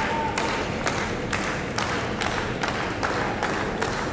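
Rhythmic clapping, about two claps a second in a steady beat, over a constant murmur of arena noise as a volleyball serve is awaited.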